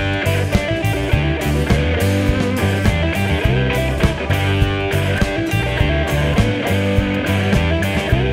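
A rock band playing with a steady drum beat, bass guitar and strummed guitar.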